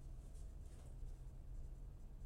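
Quiet classroom room tone: a steady low hum with a few faint scratchy sounds in the first second.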